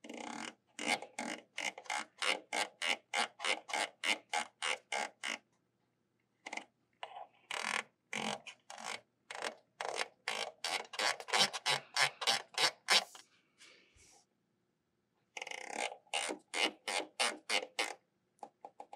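Control knobs on the apparatus's power supplies being turned in clicking steps, about four or five clicks a second, in three runs with short pauses between them. The voltage and coil current are being reset for new readings.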